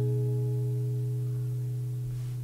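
A strummed acoustic guitar chord ringing on and slowly fading, its lowest notes the strongest.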